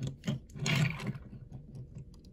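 A small die-cast toy pickup truck handled and slid across a tabletop: a few soft clicks and a brief scrape about half a second in.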